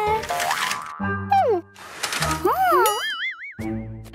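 Cartoon sound effects: boing-like sliding and wobbling whistle glides over bouncy children's background music, ending in a long warbling whistle near the end.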